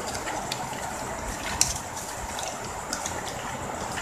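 Shiny ribbon rustling and crackling as hands fold and weave it, with a few short sharp ticks, the loudest about one and a half seconds in, over a steady hiss.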